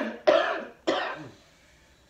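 A person coughing three times in quick succession, the coughs dying away about a second and a half in: smoke-induced coughing from drawing on a cannabis joint.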